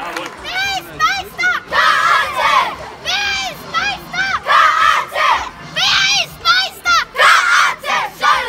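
A group of young boys shouting a team chant together in celebration: a rapid run of short, high, loud calls.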